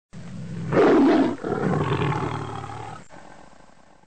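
A roaring-animal sound effect: one loud roar about three-quarters of a second in, then a second, longer roar that fades away toward the end.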